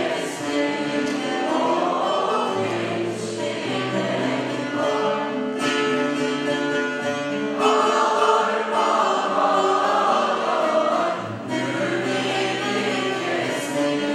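A choir singing slow, sustained notes over instrumental accompaniment, with a held bass note underneath.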